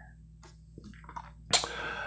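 Faint clicks of a small plastic dressing cup and its lid being handled, then a brief louder plastic crackle near the end.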